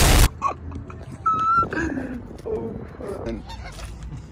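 A loud explosion blast cuts off abruptly just after the start, followed by a flock of Canada geese honking.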